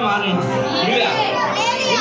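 Loud speech from a preacher shouting into a microphone, with other voices from the congregation mixed in.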